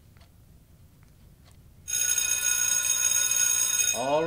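Electric bell ringing steadily, signalling that time is up on the test. It cuts in suddenly about halfway through, after a quiet room with faint small clicks.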